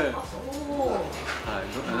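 Men laughing, with a smooth pitched tone rising and falling in several arcs through the laughter.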